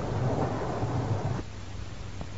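Crackly low rumbling noise that drops away about one and a half seconds in, leaving a steady low hum and hiss.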